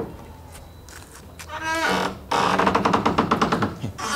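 Corrugated iron door creaking open on its hinges: after a quiet start, a rising squeak about a second and a half in, then a loud, rapidly pulsing creak lasting over a second.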